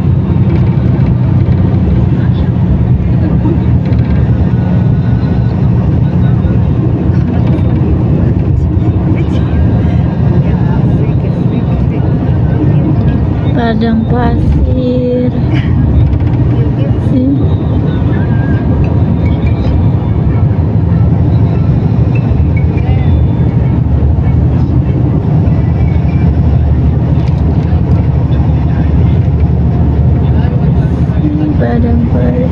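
Steady low rumble of engine and tyres heard from inside a vehicle moving at speed along a highway.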